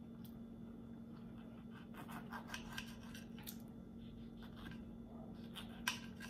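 Table knife and fork cutting a small hot pepper on a plate: faint scraping and small clicks of metal on the plate, a little sharper near the end, over a faint steady hum.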